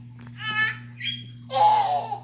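A toddler's excited high-pitched squeals: two short squeals, then a louder, rougher shriek near the end.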